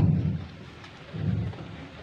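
Low rumbling noise on a handheld microphone in a pause between a man's spoken phrases, swelling at the start and again about a second in.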